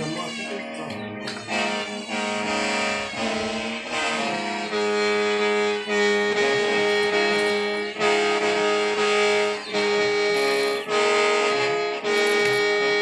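Hmong qeej, a bamboo free-reed mouth organ, played in short phrases: several reeds sound together over a steady low drone, with brief breaks between phrases. It is being test-played while its maker works on the pipes to repair it.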